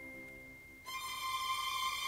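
Orchestral string section playing soft, sustained chords. One chord fades away, and a new, higher held chord comes in just under a second in.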